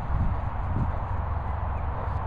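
A bulldog sniffing and snuffling at the grass, short low nasal sounds twice, over a steady low rumble.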